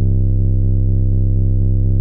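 808 bass sample looped between two points in FL Studio's Edison, holding one steady, deep sub-bass tone without decaying.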